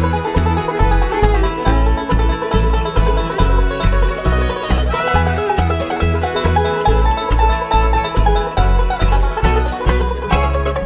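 Bluegrass band playing an instrumental passage on fiddle, banjo, mandolin, acoustic guitar and upright bass, the bass keeping a steady pulse of about two notes a second.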